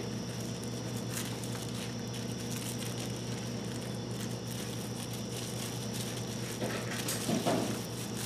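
Plastic wrap crinkling and rustling faintly as fingers roll and crimp the edge of a folded pie-crust turnover, over a steady low electrical hum.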